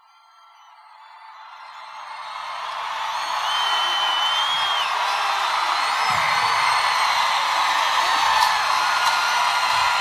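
Large arena crowd cheering and screaming, fading in over the first few seconds, with high held screams and whistles standing out above the noise.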